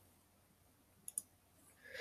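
Two quick computer mouse clicks, close together, about a second in, in near silence.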